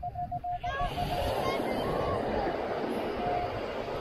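Minelab Equinox 800 metal detector beeping rapidly on one mid pitch for about the first second, with one more short beep near the end. Underneath, a steady hiss of beach sand being scooped and sifted through a sand scoop.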